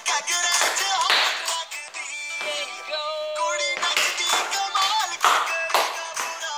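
Upbeat dance music with a sung melody over a steady, sharp beat.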